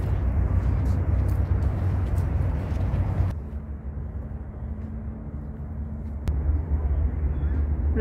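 Steady outdoor rushing noise with a heavy low rumble that cuts off abruptly a little over three seconds in, leaving a quieter background with a faint steady hum. A single sharp click comes about six seconds in, and the rumble builds again near the end.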